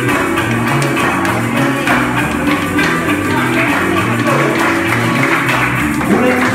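A live band playing a Latin American folk song without singing: a small guitar-like string instrument strummed over electric bass and drums.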